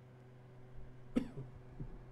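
A man's single short cough about halfway through, followed by a fainter throat sound near the end, over a steady low hum.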